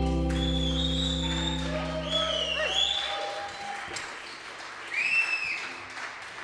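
A live band's final chord rings out and fades, stopping about three seconds in, while the audience claps, cheers and whistles. A loud whistle rises and falls about five seconds in.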